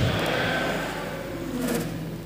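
The echo of a man's loud, amplified voice dying away in a large hall, leaving a steady low hum and faint background noise, with a brief soft sound near the end.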